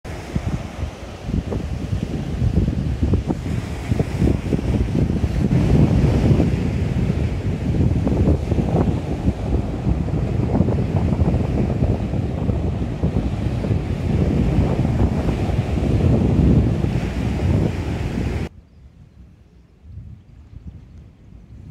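Wind buffeting a phone's microphone in loud gusts, a rough low rumble that swells and falls, and cuts off suddenly near the end.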